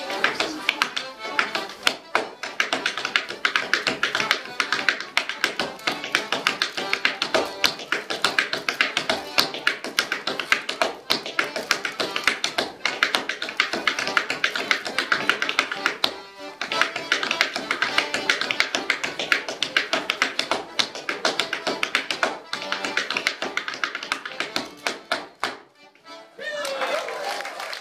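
Hard-soled shoes step dancing on a wooden board: rapid rhythmic taps and shuffles over a lively accordion tune. There is a brief break in the stepping about two-thirds through, and the steps stop just before the end.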